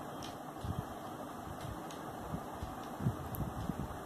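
Faint scratching of a ballpoint pen writing on paper, in irregular strokes over a steady room hum.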